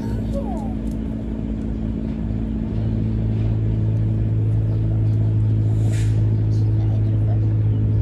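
A steady low motor hum with a few steady overtones, growing louder about three seconds in, with a short hiss about six seconds in.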